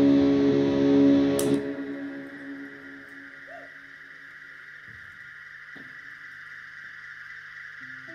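An electric rock band holds a loud guitar chord that is cut off about a second and a half in. What follows is a quiet stretch with a steady high drone, a couple of soft plucked guitar notes and a low held note, as the band moves into the next song.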